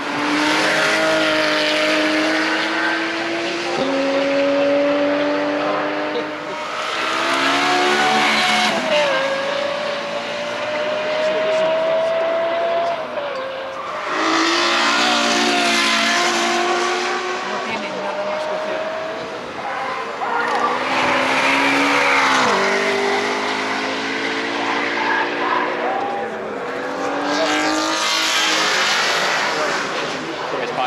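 A series of high-performance cars accelerating hard past, one after another, among them a Porsche 911 GT3's flat-six and a Ferrari F12 Berlinetta's V12. Each engine note climbs in pitch as it revs, then drops sharply at the upshifts.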